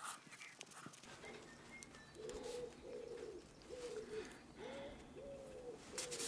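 A pigeon cooing faintly: a run of short, low coos, a little more than one a second, starting about two seconds in.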